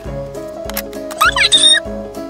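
Automatic coin-stealing cat money box giving a short electronic meow about a second in, as its lid starts to lift to grab the coin, over background music with a steady beat.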